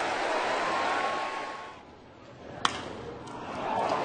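Stadium crowd noise that drops away briefly about two seconds in, then a single sharp crack of a metal baseball bat hitting a pitch, sending up a pop fly.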